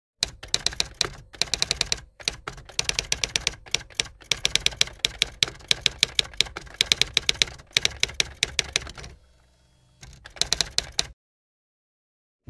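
Typewriter keystroke sound effect: rapid sharp key clicks in runs with short pauses, a near-silent gap about nine seconds in, then a last short run that stops about a second before the end.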